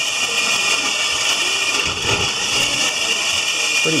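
Motor-driven roller wheels of a robot ball-pickup prototype spinning steadily, giving a continuous high whir.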